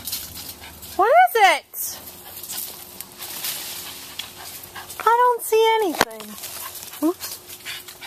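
Dog whining and yelping with excitement: a high call that rises and falls about a second in, two more close together around five seconds in, and a short one near the end.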